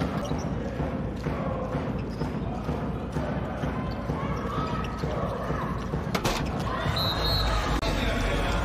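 A handball bouncing on an indoor court floor, with shouting voices in a large hall. There is one sharp knock about six seconds in.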